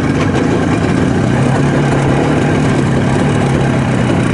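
IZh Jupiter sidecar motorcycle's two-stroke twin-cylinder engine running steadily while riding along a dirt track.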